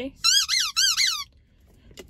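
Squeaky dog toy squeezed three times in quick succession, each squeak rising and falling in pitch.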